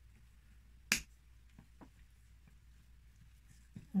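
A single sharp snip of scissors about a second in, followed by a couple of faint small clicks.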